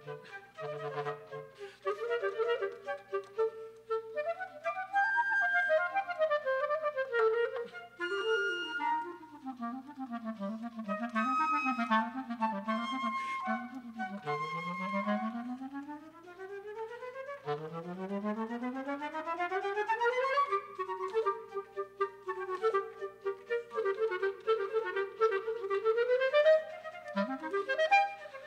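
Clarinet and flute duet playing a classical piece, two melodic lines moving together, with two fast rising runs about midway through.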